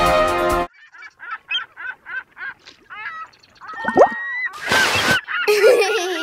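Title music cuts off under a second in, followed by a fast run of short honking, bird-like calls, about four a second, and then more calls. A loud burst of noise, about half a second long, comes near five seconds.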